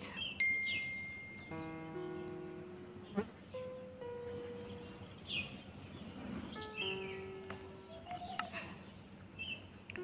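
Soft background music of held chiming notes, with short bird chirps scattered through it.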